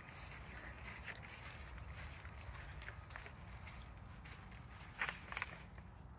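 Faint footsteps of a person walking across dry lawn grass, irregular soft crunches with a few louder steps about five seconds in.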